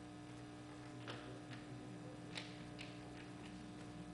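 Faint room tone of a quiet hall over a public-address system: a steady low electrical hum, with a few faint scattered clicks and taps.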